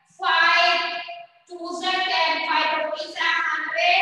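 Children's voices chanting together in a sing-song classroom recitation, in about three drawn-out phrases with short breaks between them.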